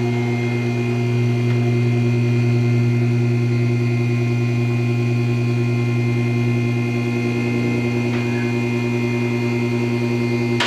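Electric hydraulic power unit of a two-post car lift running steadily under load, a low, even hum as it raises a car.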